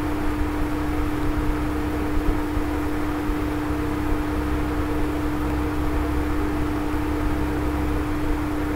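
Steady background hum and hiss with no speech: one constant droning tone over a low rumble, unchanging throughout.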